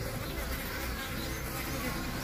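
Steady buzzing of mandaçaia stingless bee drones (Melipona mandacaia) flying low around a queen on the ground, drawn to her scent to mate.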